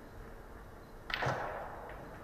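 Billiard balls being racked in a triangle on the cloth: one sharp knock about a second in, followed by a brief scrape.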